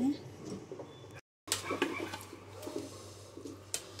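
A metal spoon clinking and scraping against a steel pressure cooker as cooked khichdi is scooped out and served onto a plate, in scattered sharp clicks. The sound cuts out completely for a moment about a second in.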